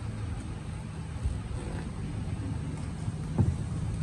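Steady low hum of a small air compressor running to feed a pneumatic staple gun, with a soft knock about three and a half seconds in.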